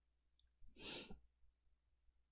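Near silence with a low steady hum, broken about a second in by one faint, breathy exhale from a person at the microphone, lasting about half a second.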